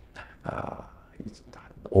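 A man speaking softly in a breathy, half-whispered voice; his speech grows loud again right at the end.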